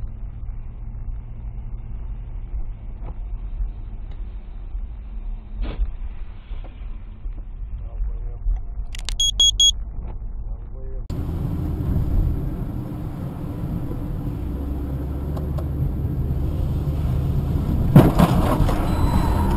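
In-car dashcam sound of a car driving on a wet road: a steady low engine and road rumble with a few light clicks. About nine seconds in comes a quick run of high beeps, and about eleven seconds in the sound jumps to a louder, hissier rumble.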